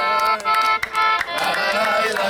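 Small concertina-style button accordion playing held chords, with hand claps sounding irregularly over it.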